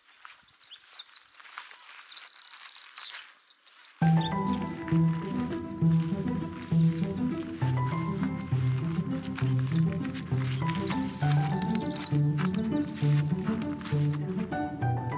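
A small songbird singing, quick high chirps and a trill, over faint outdoor ambience. About four seconds in, background music with a regular bass line starts suddenly and plays on under the birdsong.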